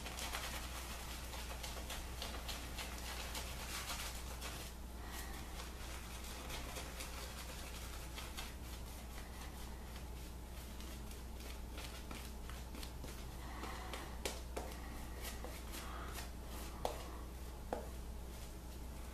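Shaving brush working lather on a face: a soft, scratchy swishing of bristles through the foam, busiest in the first five seconds, with a few small taps near the end and a steady low hum underneath.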